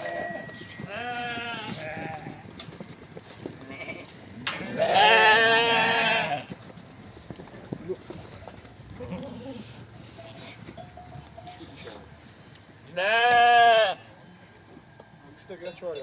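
Sheep bleating: three wavering bleats, a weaker one about a second in, then a long loud one of nearly two seconds around five seconds in, and another loud, shorter one near the end.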